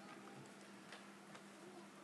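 Near silence: room tone with a faint steady low hum and a couple of faint ticks about a second in.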